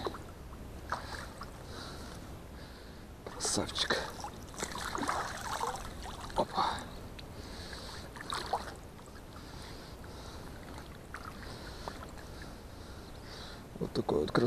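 Shallow, duckweed-covered ditch water sloshing and reeds brushing as a person wades through it, in irregular bursts that are loudest from a few seconds in until past the middle.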